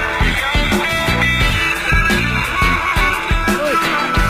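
Loud music with a steady, heavy beat.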